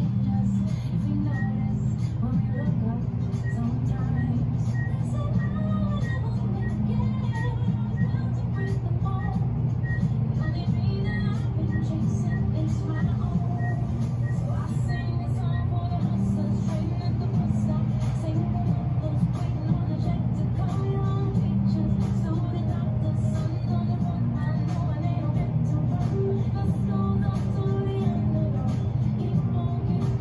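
High-speed ThyssenKrupp traction elevator car running down at speed: a steady low hum of the ride with no breaks, with music playing over it.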